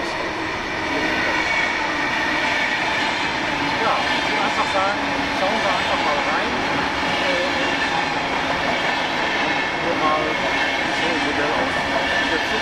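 Passenger train running through the station, a steady rolling rumble that builds about a second in and holds.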